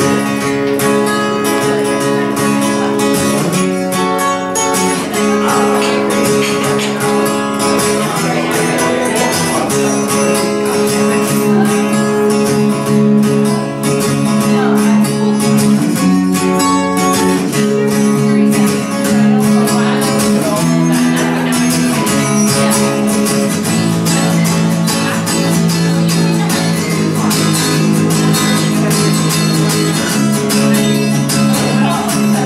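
Acoustic guitar strummed steadily alongside an electric guitar in a live instrumental passage, without vocals.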